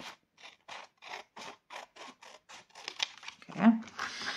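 Scissors cutting through a folded sheet of black paper, a steady run of short snips about three a second. A brief louder sound follows near the end.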